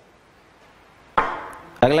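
A single sharp knock or slap, about a second in, dying away over about half a second.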